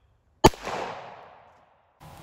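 A single shot from a Kimber Custom II 1911 pistol about half a second in, its report echoing and dying away over about a second.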